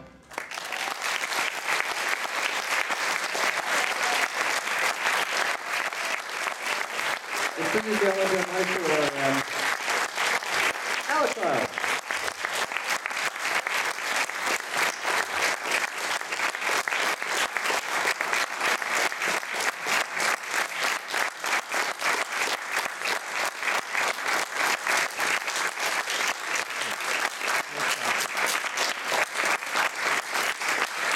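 Audience applause: steady, dense clapping that starts just as the big band's final chord ends. A voice shouts out twice, about eight and eleven seconds in.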